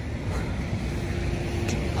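Outdoor street ambience: a steady low rumble of passing traffic, with a faint steady hum held for about a second in the middle.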